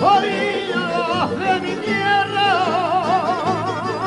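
Canarian folk song: a solo voice holding long notes with a wide vibrato, sliding down about a second in, over guitars and other small plucked string instruments.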